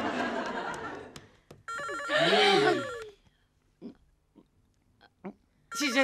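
Telephone ringing twice, each ring starting suddenly, with about three seconds of quiet between. A voice cries out over the first ring.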